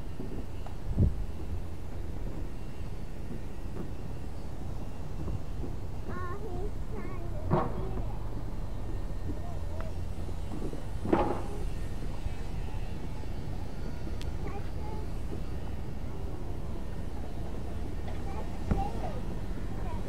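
Steady low outdoor rumble with faint distant voices, broken by a few brief sharp sounds about a second in and again around seven and eleven seconds.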